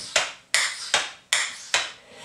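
Clogging shoe taps striking a hard floor: four sharp taps, unevenly spaced, as the dancer steps out a push-off.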